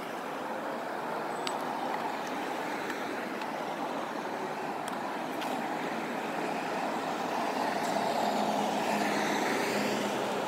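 Road traffic on a busy multi-lane city street: a steady rush of cars, trucks and a bus driving past, growing louder near the end as vehicles pass close by.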